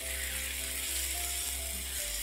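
Chicken pieces sizzling in hot oil in a frying pan, stirred with a silicone spatula, a steady hiss.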